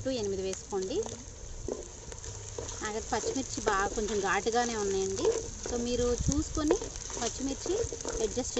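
Sliced onions, whole spices and green chillies sizzling in hot oil in a clay pot while a wooden spatula stirs them, with a voice talking over the frying.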